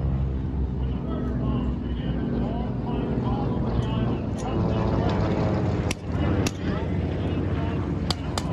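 Propeller warplane's piston engine droning steadily as it makes a low pass, with two sharp bangs from pyrotechnic charges about six seconds in.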